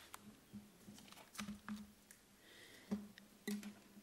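Faint handling noise at a table microphone: a few scattered soft clicks and knocks over a low steady hum.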